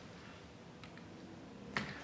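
Faint room tone, then a single sharp click near the end: a laptop key pressed to advance the presentation slide.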